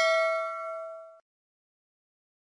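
Notification-bell ding sound effect, its several-toned ring fading and cutting off abruptly just over a second in.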